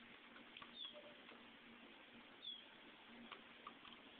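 Near silence: faint background hiss with a few faint ticks and two brief high chirps that fall in pitch, about a second in and again a couple of seconds later.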